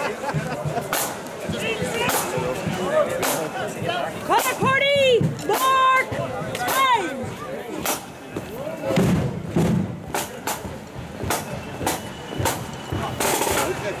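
Marching band drums beating time with sharp single hits about once a second, over crowd voices and a few calls. Near the end the drums break into a roll as the flute band strikes up.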